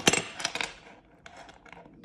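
Small metallic clicks and clinks of an 8 mm 14-karat gold Miami Cuban link chain and its box-lock clasp being handled in the fingers. The sharpest click comes right at the start, with fainter scattered ticks later on.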